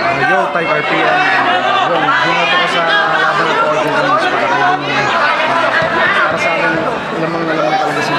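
Speech only: a man talking, with the chatter of other voices around him.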